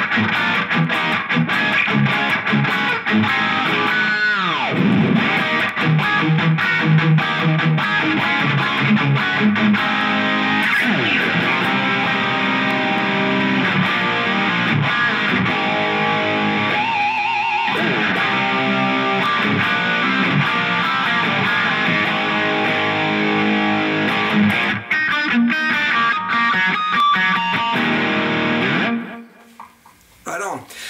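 Electric guitar with P90 single-coil pickups, a James Tyler Variax, played through a Line 6 Helix amp modeler with overdriven distortion. It runs through continuous riffs and single-note lines, with a falling slide about four seconds in. The playing stops a second or so before the end.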